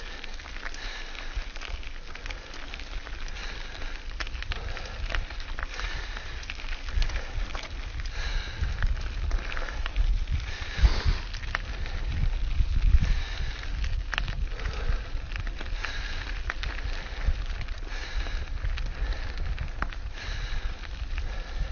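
Mountain bike rolling over a gravel forest track: crunching tyres and frequent rattling clicks from the bike, with wind rumbling on the microphone. It gets louder and rougher about eleven to thirteen seconds in.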